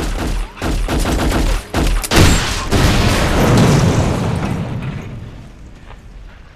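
Rapid automatic gunfire from a submachine gun in quick bursts for about two seconds. Then comes a sudden loud blast with a low rumble that dies away over the next few seconds.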